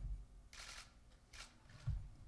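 Faint rustling twice and a soft low thump near the end, handling and movement noise in a quiet hall.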